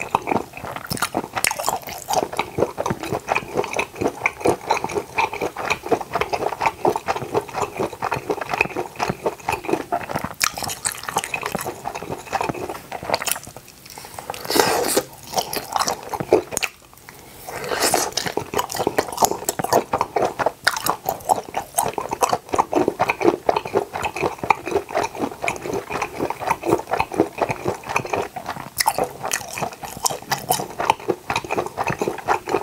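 Close-miked chewing of grilled octopus skewer pieces with sauce: rapid, wet mouth smacks and clicks that go on without a break except for a short lull near the middle.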